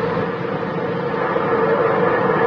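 Steady droning hum with hiss on an old cassette recording of radio traffic, one constant tone held under the noise and growing slightly louder after about a second and a half.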